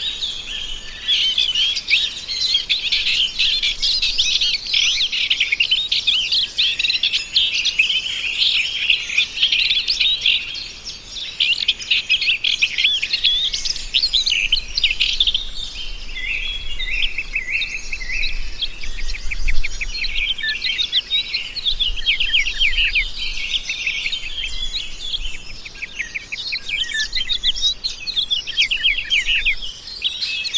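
Dense chorus of many small songbirds chirping continuously in rapid, overlapping calls, with a brief lull about eleven seconds in.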